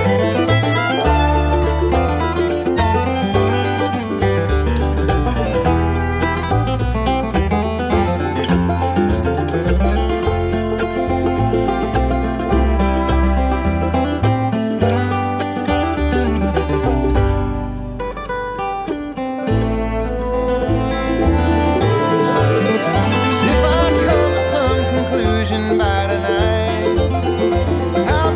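Bluegrass music with banjo and acoustic guitar picking over a steady pulsing bass line; the band eases off briefly about eighteen seconds in, then picks back up.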